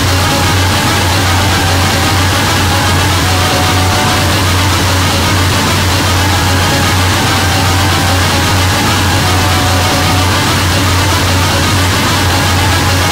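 Harsh noise music: a loud, dense, unchanging wall of hiss over a strong steady low drone, with faint held tones in the middle.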